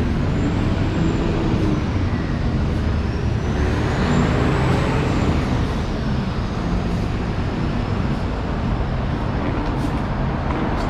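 City road traffic running steadily, with engine hum under a constant rush of road noise and a bus passing close by. A faint high whine rises and falls twice.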